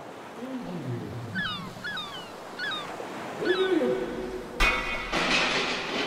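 Ocean surf fading in, with a run of four short swooping bird-like chirps in the middle and a few lower gliding calls. About three-quarters through, a sudden loud harsh burst of noise with a metallic ring begins and lasts about a second.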